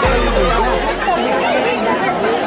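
Many voices chattering at once, as from a crowd, over background music.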